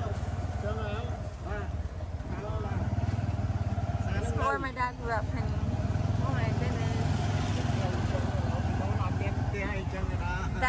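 Tuk-tuk's small engine running with a steady low drone as it drives along a street, with people's voices talking now and then.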